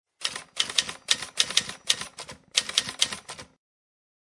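Typing sound effect: a quick run of key clicks in short bursts, matching text being typed onto the screen. It stops about three and a half seconds in.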